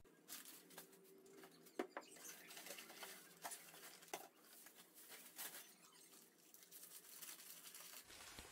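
Faint rustling of shredded-paper packing and cardboard being handled, with a few light taps and clicks, the sharpest a little under two seconds in and another about four seconds in.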